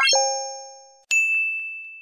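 Synthetic end-card chime sound effects: a quick rising sweep into a two-note chime that rings for about a second, then a sharp, high ding just after a second in that rings on and slowly fades.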